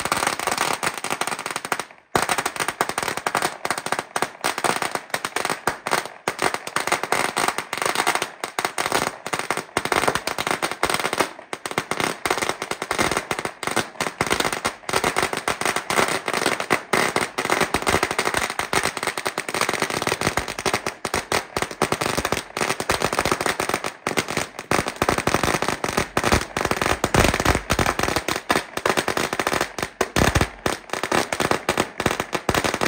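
A long string of firecrackers burning through, a continuous rapid rattle of small bangs with a brief break about two seconds in.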